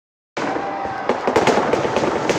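Firecrackers packed inside a burning effigy going off in dense, rapid crackling and popping, starting about a third of a second in.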